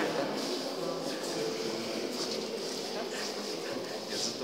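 Several people talking at once in low, indistinct voices.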